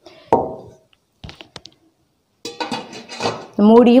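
A stainless steel kadai set down with a single knock about a third of a second in, followed a second later by a few light metallic clinks as the cookware and its glass lid are handled.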